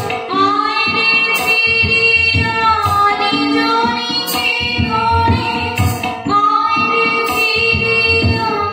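A woman singing a Bengali devotional song, accompanying herself on a harmonium, over a steady percussion beat.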